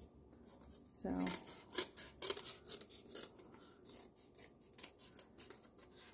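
Scissors snipping through thin brown cardboard in a run of quick cuts, about two or three a second.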